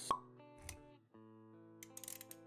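Motion-graphics intro jingle: sustained music notes, with a short sharp pop sound effect just after the start and a soft low thump about two-thirds of a second in.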